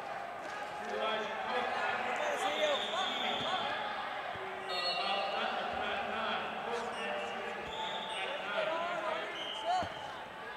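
Echoing sports-hall ambience at a wrestling meet: many voices talking and calling out at once, with occasional dull thuds of bodies on the wrestling mats, the loudest one near the end.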